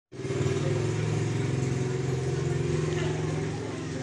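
Motorcycle engine idling with a steady, even low hum that eases slightly near the end.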